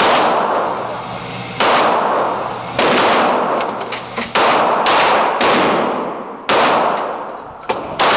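Glock 19C 9mm pistol fired in slow repeated shots, about seven of them, one every one to one and a half seconds. Each shot rings out and echoes in the indoor range.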